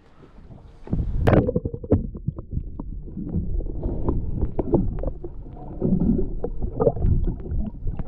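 Muffled underwater water noise, a low rumbling and gurgling with many irregular clicks and knocks, picked up by a camera submerged in the sea. It is quieter for about the first second.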